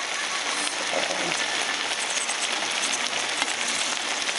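Beef and spinach stew sizzling in a pot on high heat, a steady hiss full of fine crackles.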